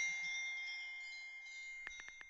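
A phone's incoming-message chime: one struck high tone ringing out and slowly fading. Near the end, the first quick taps of phone keyboard clicks begin.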